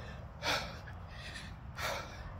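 A woman's breaths while walking: two quick, audible breaths, one about half a second in and one near the end.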